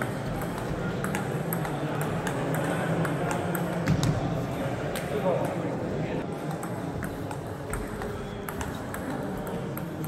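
Table tennis balls clicking off bats and tables at irregular intervals, from several tables in play around a large hall, over background talk.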